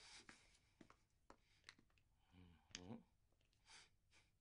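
Near silence: room tone with a few faint clicks and, about halfway through, a brief faint voiced murmur, followed near the end by a soft breath.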